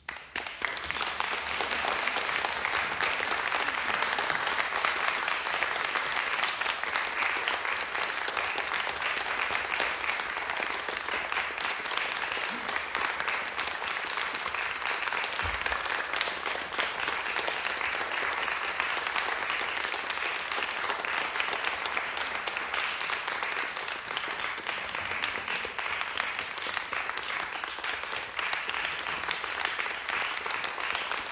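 Audience applauding, starting suddenly out of near silence at the end of a piece and going on steadily.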